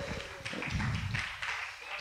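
Faint, off-microphone voice of someone in the room speaking, the words unclear, over the hall's room noise.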